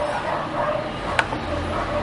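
A single sharp click about a second in, a keypress or mouse click submitting the form, over a steady background murmur.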